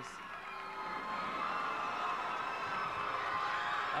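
Large audience cheering, swelling in the first second and then holding steady.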